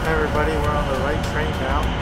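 A person's voice, words not made out, over a steady low rumble like that of a moving vehicle.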